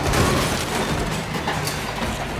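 Film sound mix of a hard landing on a wet street: a heavy thud just after the start, then a few lighter knocks and scrapes, over a low steady music drone.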